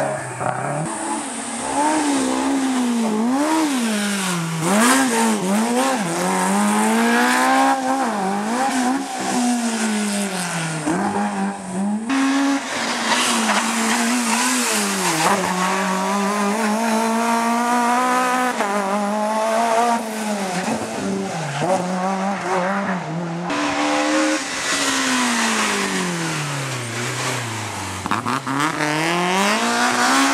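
Hill-climb rally cars driven hard through a tight bend one after another, first a Subaru Impreza, then a Peugeot 106, then a BMW 3 Series Compact: each engine revs high, drops sharply and climbs again over and over with braking and gear changes. The sound jumps abruptly from one car to the next about twelve and twenty-three seconds in.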